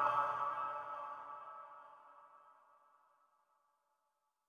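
Slowed-and-reverb naat recording fading out: the last sung note's reverb tail dies away over about two and a half seconds, then silence.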